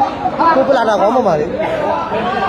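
Speech: a man talking over the chatter of a crowd in a large, echoing hall.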